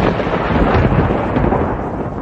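Thunder sound effect: a loud, continuous rumble with a crackling texture.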